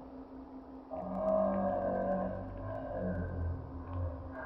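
A Yorkshire terrier gives one drawn-out, wavering howl-like vocalization lasting about three seconds, starting about a second in.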